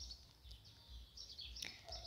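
Near silence: faint background noise with a low hum in a pause between speech.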